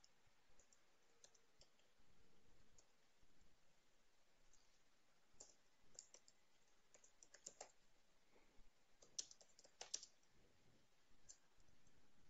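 Faint, scattered keystrokes on a computer keyboard, barely above near silence, with a few quick runs of keys about two-thirds of the way through.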